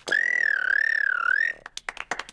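A cartoon rabbit child's special noise: one high-pitched squeal, wavering slowly up and down, held for about a second and a half. It is followed near the end by children clapping.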